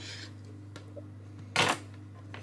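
Hands handling cut sheets of puff pastry on a wooden chopping board, with one short, sharp knock about one and a half seconds in, over a steady low hum.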